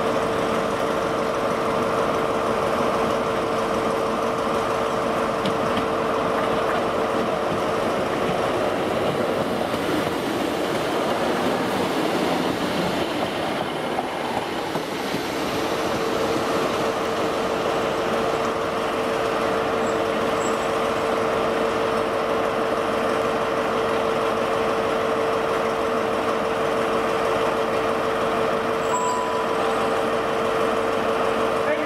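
Diesel locomotive and train running steadily as it pulls away, a continuous drone with a steady hum that drops out for a few seconds midway.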